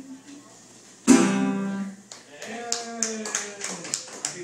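A single strummed closing chord on a metal-bodied resonator guitar, struck about a second in and ringing out for under a second, ending the song. Scattered applause follows, with a brief call from the audience.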